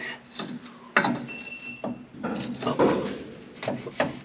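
Large open-end wrenches working a rusted hydraulic hose fitting nut. There is a sharp metallic clank about a second in, then a brief high squeak and rubbing, scraping metal as the wrenches strain against the rusted-up nuts.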